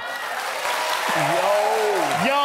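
A studio audience applauding, with a voice calling out over the applause from about a second in.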